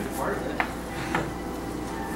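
Low murmur of voices in a room, with two short sharp clicks, about half a second and just over a second in.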